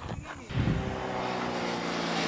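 A vehicle engine runs at a steady pitch in the background. It comes up about half a second in.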